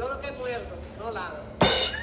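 A short drum sting: a sudden burst of drums and cymbal lasting about a third of a second near the end, louder than the quiet voices before it.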